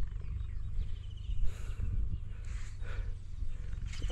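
Low, uneven rumbling noise on the microphone, with faint hissy sounds and a thin faint tone in the middle.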